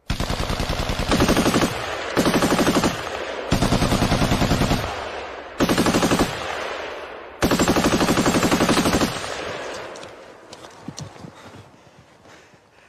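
Machine gun firing five long bursts of rapid shots, about ten a second, with short gaps between them. After the last burst the sound dies away, with a few faint scattered cracks.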